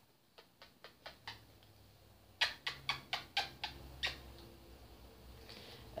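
House cat purring faintly, a low steady hum held close to the microphone, with a scatter of sharp clicks, the loudest in a quick run about two and a half to four seconds in.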